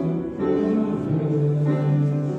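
A hymn sung by voices with keyboard accompaniment, the tune moving in held notes, with one low note sustained for about a second in the second half.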